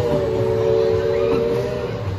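A chime whistle sounding one long blast: three steady tones held together as a chord, cutting off near the end.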